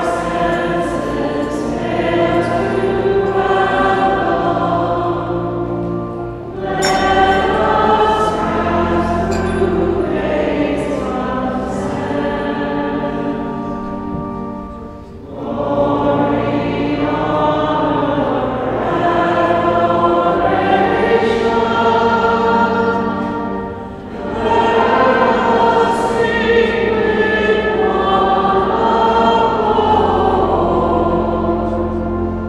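Choir singing a slow hymn over sustained low notes, in long phrases broken by brief pauses about every eight to nine seconds.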